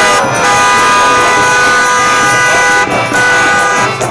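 Car horn held in one long, steady blast from about half a second in until near the three-second mark.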